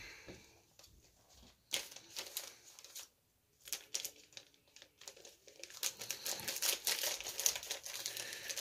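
Packaging crinkling and crackling while it is handled and cut open with dull scissors that struggle to cut. The crackles are scattered at first and grow denser over the last two seconds.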